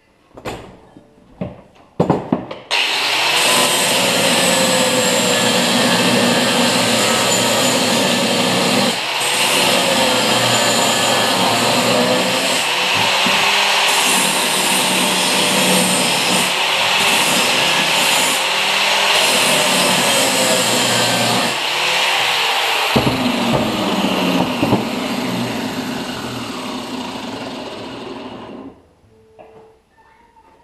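A few sharp metal clacks, then a handheld electric angle grinder runs on steel for about 25 seconds, its motor pitch wavering under load. It tails off and stops near the end.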